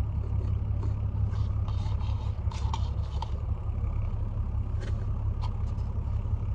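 Steady low rumble of a car heard from inside the cabin while driving, with a few faint short sounds over it.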